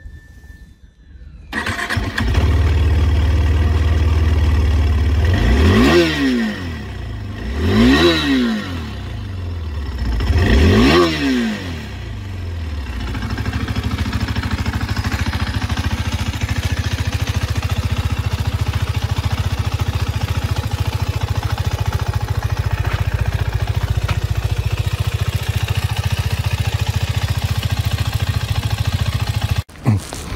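2022 KTM RC 390's single-cylinder engine starting after a brief crank and settling into idle. It is revved three times, each rev rising and falling, a few seconds apart, then idles steadily until the sound cuts off near the end.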